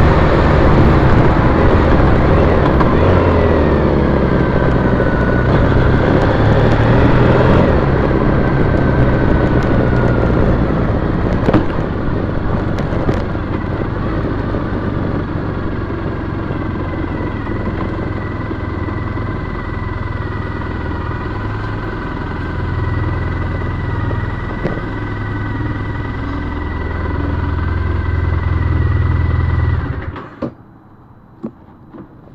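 Triumph Bonneville T100's 865 cc parallel-twin engine running as the bike rides along. Road and wind noise are loud for the first several seconds, then the engine runs more quietly and steadily at low speed, and the sound cuts off sharply at the very end.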